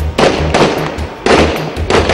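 Two loud explosion blasts about a second apart, each a burst of noise that dies away, over background music with a steady bass beat.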